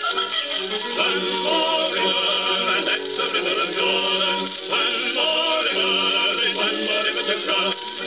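Old Columbia gramophone record playing on a turntable: a passage of band music with wavering pitched vocal or instrumental lines between verses of a novelty song.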